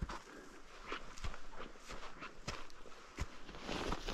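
Hiking boots stepping through crusty snow and dry grass: irregular crunching footsteps, about two a second. Near the end comes a rustle of clothing as the walker crouches.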